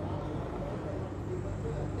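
Steady low room hum, with a faint voice murmuring.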